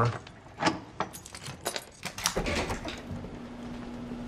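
Padlock and hasp on a metal door being unlocked: a series of sharp metal clicks and rattles, then the door being pulled open. A steady low hum comes in about two-thirds of the way through.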